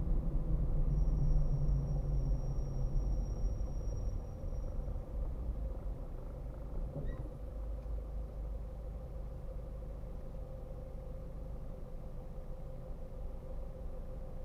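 Car heard from inside the cabin: engine and road rumble as the car slows to a stop, with a thin high whine for a few seconds, then settling to a quieter steady engine idle about six seconds in while it waits at the red light.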